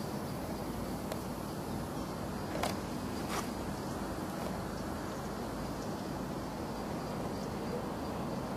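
Steady low outdoor background rumble, with two brief sharp clicks a little under a second apart about three seconds in.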